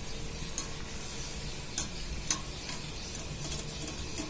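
Luchi deep-frying in hot oil, a steady sizzle, with a few sharp clicks; the loudest click is about two seconds in.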